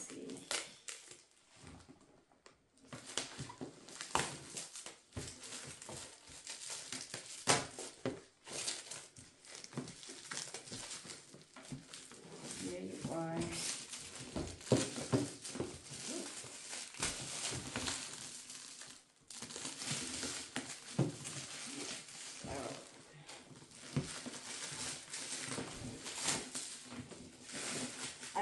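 Black plastic wrapping film crinkling and rustling in repeated irregular bursts as it is pulled and torn off a cardboard box.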